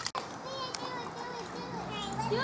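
Young children's voices, faint, chattering and calling as they play.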